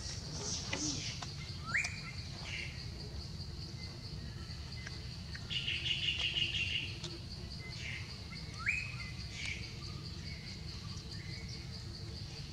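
Wild birds calling: two short rising whistles and a rapid trill, over a steady high-pitched pulsing insect drone.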